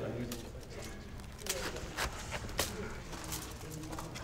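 A few light, separate clicks and crinkles of flattened metal bottle caps as the hanging sculpture is handled, over a faint murmur of voices and a low hum.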